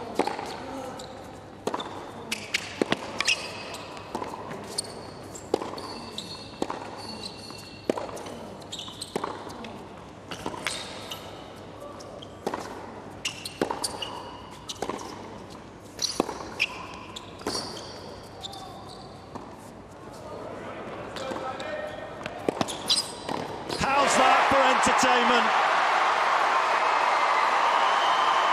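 Tennis rally on an indoor hard court: racket strikes and ball bounces at a steady rally pace, with sneaker squeaks among them, for about twenty-four seconds. Then the crowd breaks into loud applause and cheering that runs on.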